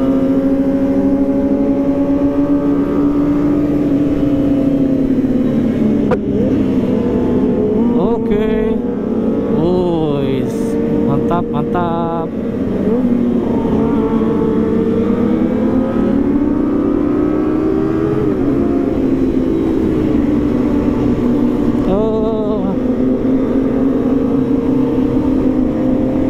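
Kawasaki ZX-25R's 249 cc inline-four engine running at steady cruising revs. Its pitch eases down and climbs back a few times as the throttle closes and opens, over a constant low rumble of wind and road.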